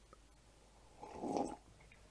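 A man sipping a drink from a mug: one short, soft sip about a second in.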